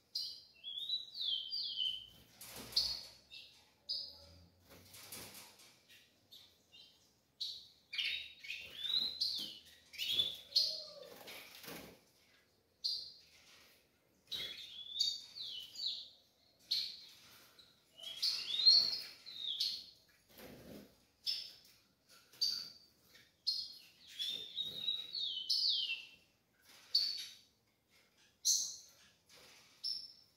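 A young tico-tico (rufous-collared sparrow) calling: clusters of quick high chirps, some notes sliding down in pitch, repeated every second or two. A few short rustling noises from the caged birds moving come between the calls.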